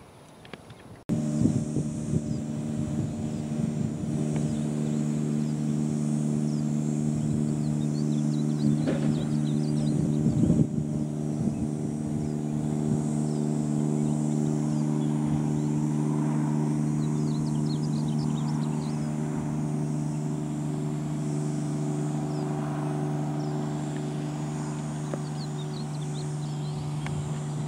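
A steady motor drone, a low even hum that holds one pitch throughout, starting abruptly about a second in. Faint bird chirps can be heard above it.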